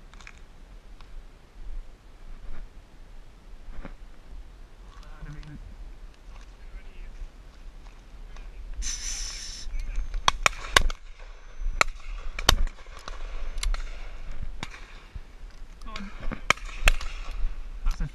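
Shotguns firing at driven pheasants: a run of about eight sharp reports starting about ten seconds in, some close and loud and others fainter and further off.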